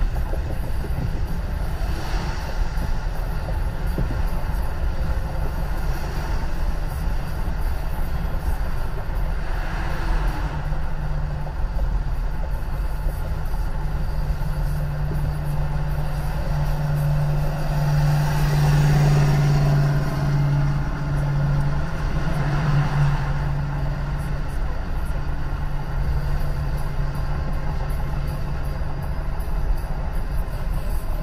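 Road and tyre noise inside a car's cabin at freeway speed: a steady low rumble with a low hum that builds through the middle and eases off near the end, swelling a few times as traffic goes by.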